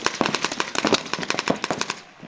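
Paintball markers firing in a rapid string of sharp pops, many shots a second, which stops abruptly at the end.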